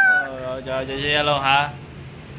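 A small child's high-pitched voice making long, wavering vocal sounds that glide up and down, stopping shortly before the end.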